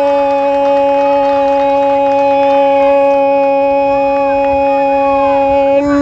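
A man's voice holding one long, steady 'goooool' shout, the drawn-out goal call of a football commentator announcing a goal. Near the end the held note gives way and the pitch starts to bend.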